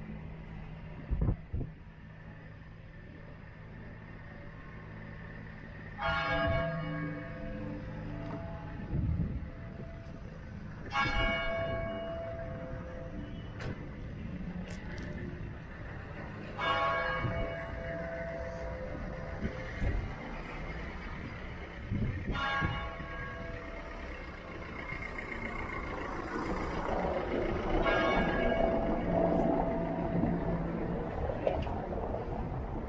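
A church bell tolling slowly: five single strikes about five and a half seconds apart, each ringing on and fading before the next. Street noise grows louder under the last strikes.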